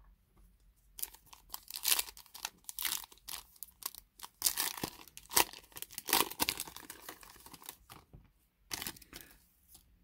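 Foil trading-card pack wrapper being torn open and crinkled by hand: a run of sharp, irregular crackling tears starting about a second in, loudest around the middle, with a brief lull and a last burst near the end.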